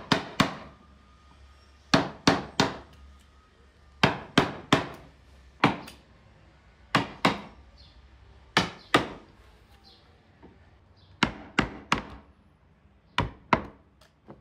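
Round wooden mallet striking the wooden handle of a carving chisel driven into a wooden panel: sharp knocks in quick clusters of two or three, with pauses of a second or more between clusters.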